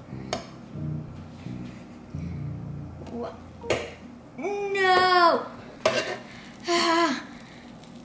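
Metal spatula clicking and scraping on an electric griddle as a pancake is lifted and flipped. A child's high voice cries out in a long wavering exclamation about halfway through, and again briefly a couple of seconds later.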